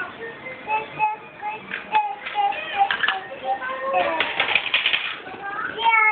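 A toddler singing a simple tune in a string of short held notes, with sharp plastic clicks and rattles from a toy garbage truck being handled, busiest about two-thirds of the way through.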